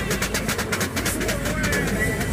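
A rapid, even run of clicks or rattles, about ten a second, that dies away after about a second and a half.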